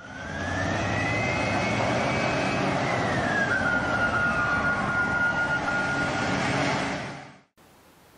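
A heavy vehicle passing: a steady rush of noise with a whine that climbs, then falls and holds one steady pitch, fading out near the end.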